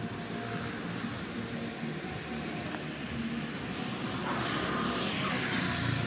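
Street traffic noise: a steady hum of road traffic, with a vehicle passing and growing louder in the last two seconds.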